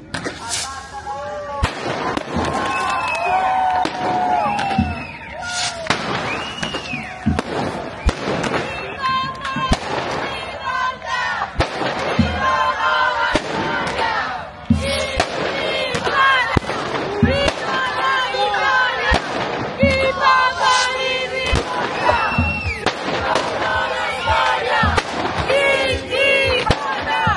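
A crowd shouting and chanting while fireworks go off in repeated sharp bangs and cracks, one of the loudest about fifteen seconds in.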